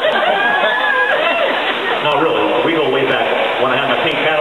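People talking and chuckling, with voices overlapping.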